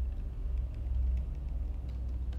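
Steady low rumble of background hum, with faint scattered clicks of computer-keyboard typing over it.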